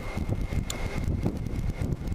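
Wind buffeting the microphone on a moving Kawasaki GTR1400 motorcycle, over the low running of its inline-four engine, with a faint steady high whine.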